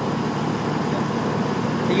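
Pramac GSW560V silenced diesel generator set running steadily at 1500 rpm, an unchanging engine sound with no rise or fall.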